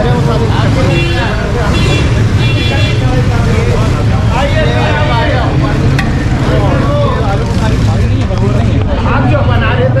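Busy street ambience: a steady low vehicle-engine rumble and traffic noise under the overlapping voices of people talking.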